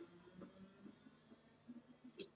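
Near silence: a pause between spoken sentences, with only faint room tone.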